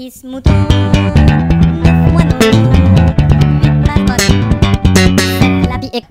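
Electric bass guitar playing a busy line of plucked notes, heavy in the low end, through speakers with their bass boost just switched on. The playing starts about half a second in.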